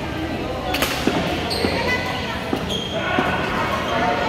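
Badminton rackets hitting a shuttlecock, a sharp hit every second or so, echoing in a large hall, with people talking in the background.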